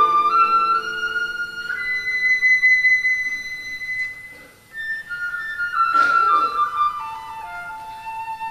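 Music: a slow flute melody of long held notes, stepping from pitch to pitch, with a short burst of noise about six seconds in.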